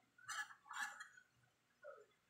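A metal spoon scraping food scraps off a plastic plate: two short scrapes about half a second apart, then a faint lower sound near the end.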